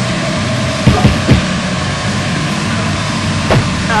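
Thumps from two people grappling in a mock fight: three quick knocks about a second in and another near the end, over a loud steady rumbling noise.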